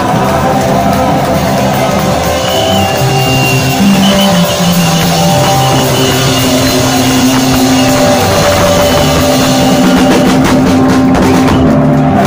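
Live punk rock band playing loudly: electric guitars and drums, with a run of sharp drum hits near the end.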